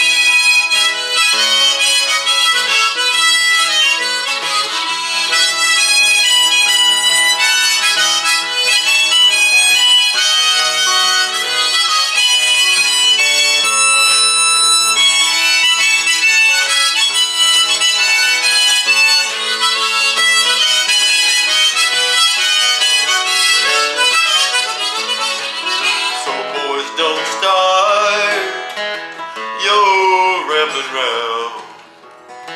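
Harmonica solo played over a strummed acoustic guitar, the instrumental break of a country song, with one long held harmonica note about halfway through.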